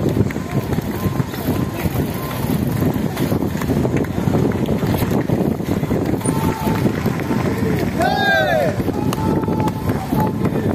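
Wind buffeting the microphone with a steady low rumble as the bicycles roll by, and a voice calling out loudly about eight seconds in, with fainter voices before it.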